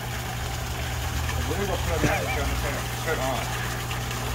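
Steady low hum of a 40-litre electric air pump driving a pond airlift pump, over the even wash of falling water from a waterfall.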